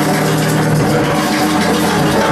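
Live band playing loud, dense improvised music, with held keyboard and electronic notes sustaining through it.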